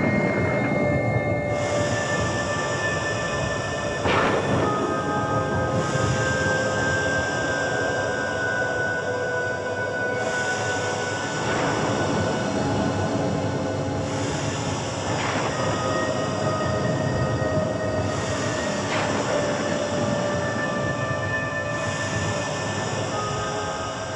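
Eerie horror background score: a dense droning wash with held high tones that change every few seconds, and a sweeping swell every four to seven seconds.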